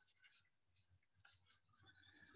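Near silence, with faint short scratches and taps of a stylus on a drawing tablet, near the start and again in the second half.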